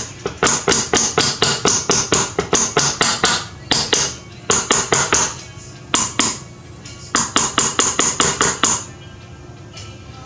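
Rapid light taps of a small hammer driving a roll pin, about six strikes a second, through an aluminium AR-15 lower receiver to seat the spring-loaded bolt catch. The taps come in runs with short pauses and stop about a second before the end, over background rock music.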